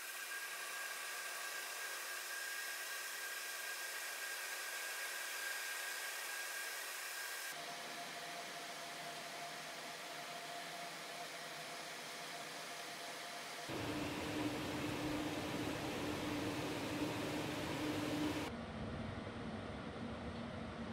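A cordless circulator stand fan with a BLDC motor running, a steady rush of air with faint whining tones. The sound shifts abruptly about seven and a half, fourteen and eighteen and a half seconds in, fuller and louder in the low end from about fourteen seconds.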